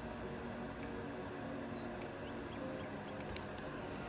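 Quiet room tone: a steady low hiss and hum with a few faint ticks spaced about a second apart.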